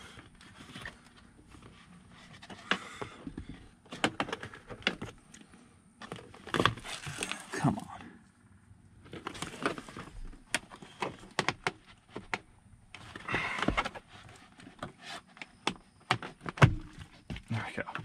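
Plastic door-sill trim plate of a car interior being pried up and lifted out by hand: irregular clusters of clicks, snaps and rattles as its clips let go and the panel is worked free.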